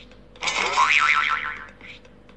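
Cartoon-style "boing" comedy sound effect: a loud, wobbling springy tone that starts about half a second in and lasts about a second.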